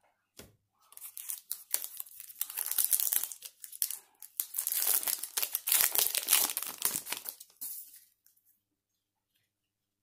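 A 2020 Topps Gypsy Queen baseball card pack being torn open by hand: the crinkly wrapper crackles and rips in a run of bursts from about a second in, loudest in the middle, and stops about eight seconds in.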